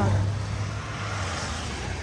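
Low, steady rumble of a motor vehicle's engine, easing off a little.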